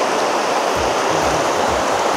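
River water rushing steadily.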